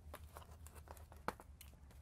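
Faint handling noise: small clicks and rustles as a heavy battery wire, its metal fitting and hand tools are picked up and moved on cardboard, with one sharper tick a little past halfway.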